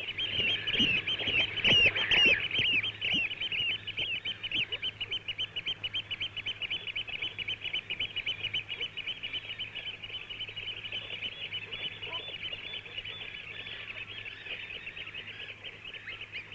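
Eurasian oystercatchers piping: a dense run of rapid, shrill calls, loudest in the first few seconds and thinning toward the end. This is their territorial piping, birds calling against neighbours over their patch of ground.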